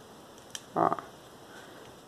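Quiet room tone with a single short click about half a second in, then one brief spoken word.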